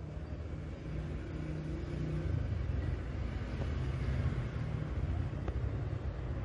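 Low rumbling background noise that grows a little louder over the first couple of seconds.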